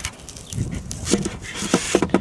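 Wooden lid of a small wooden bee mini-nucleus box being pushed into the groove cut for it: a series of knocks and scrapes, with two short squeaks, one about a second in and one near the end.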